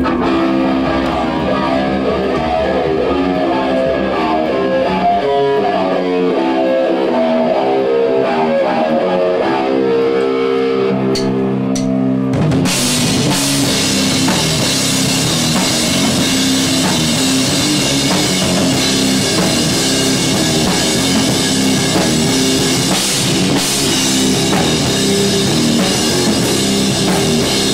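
Live rock band: a guitar plays a chordal intro on its own, then about twelve seconds in the drums, with cymbals, and the full band come in together and play on.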